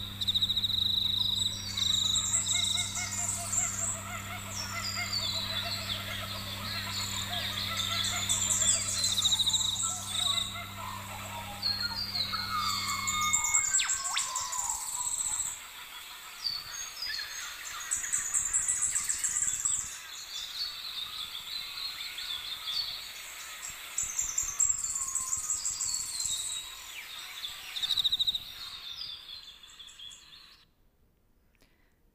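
Recorded dawn chorus in an Australian rainforest: many birds calling and singing over one another, with a steady high insect trill at the start and a low hum that stops about halfway through. It fades out near the end.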